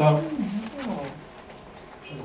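A man's voice drawn out in a falling hesitation sound that trails off about a second in, followed by quieter room sound.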